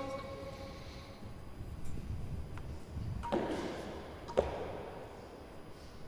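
Two knocks of a real tennis ball in the echoing indoor court: a softer one with a short ring a little over three seconds in, and a sharper one about four and a half seconds in.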